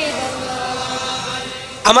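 A man's voice chanting a held devotional refrain in praise of the Prophet, slowly fading away near the end.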